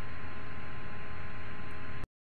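Steady hiss and low electrical hum of a voice-over recording's background noise, with a faint thin steady tone running through it.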